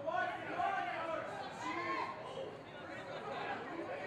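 Several people's voices calling out and talking over one another, no single voice clear.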